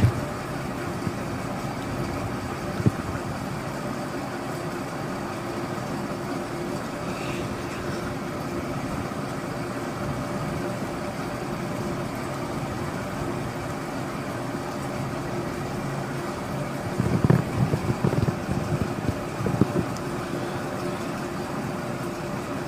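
A steady low mechanical hum, like a running motor, with a single click about three seconds in and a few louder, irregular noises between about seventeen and twenty seconds in.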